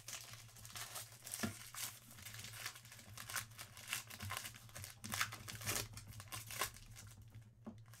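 Foil trading-card pack wrapper being torn open and crinkled by hand: a faint, irregular string of crackles.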